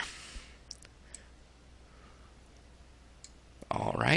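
A few faint computer mouse clicks, about three, spread over a quiet stretch while a window is dragged into place on screen.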